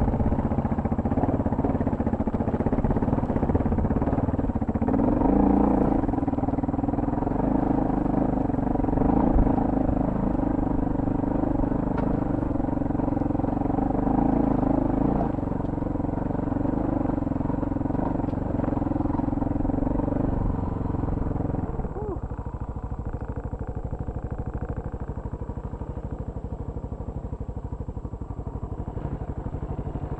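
Adventure motorcycle engine running under load as the bike climbs a rocky trail, with a steady engine note. About two-thirds of the way through, the note drops and the engine gets quieter.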